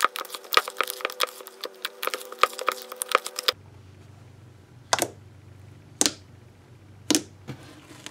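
Hands squishing and kneading a big mass of thick, mostly fluffy slime in a bowl, a quick run of wet clicks and pops. About three and a half seconds in this stops, and the slime is pressed on a tabletop with a single sharp pop about once a second.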